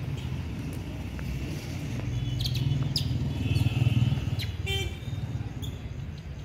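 A vehicle passing on the road, its low rumble swelling to a peak about four seconds in and then fading, with short high chirps and squeaks over it.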